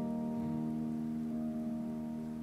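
Live instrumental accompaniment: a held chord ringing and slowly fading between sung lines.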